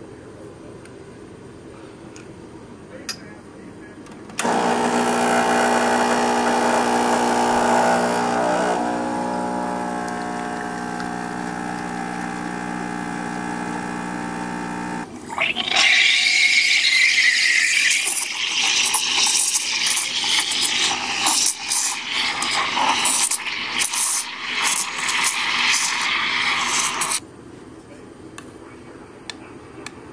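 Espresso machine's pump humming steadily for about ten seconds as a shot is pulled, stopping abruptly. Then the steam wand hisses and splutters for about eleven seconds while frothing milk.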